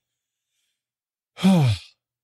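A man sighing once, a short breathy sigh that falls in pitch, about one and a half seconds in.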